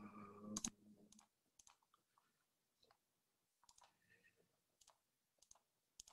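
Near silence, with a few faint, scattered computer mouse clicks as a screen share is being set up on a video call. A brief low hum and a louder click come in the first second.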